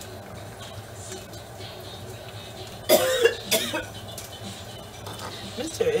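A woman coughing twice, loud and about half a second apart, roughly three seconds in, after drawing cannabis smoke from a glass pipe.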